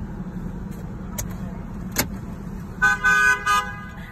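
A car horn honks three short times near the end, over the steady low rumble of city traffic heard from inside a car. A single sharp click comes about halfway through.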